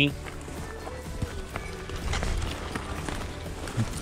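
Background music with footsteps and rustling through dry brush and undergrowth, in short irregular crunches.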